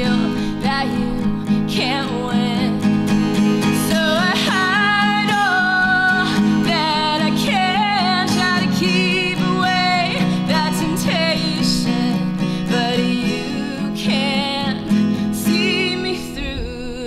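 A woman singing over her own acoustic guitar, with vibrato on the held notes.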